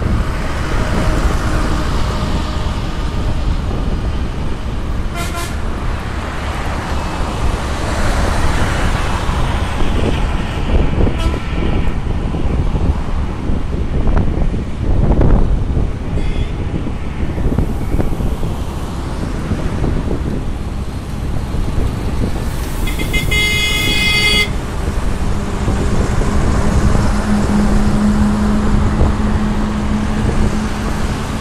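Highway traffic and wind rushing on the microphone while riding along a road. A vehicle horn honks for about a second and a half a little past two-thirds of the way in, and a steady low engine hum comes in near the end.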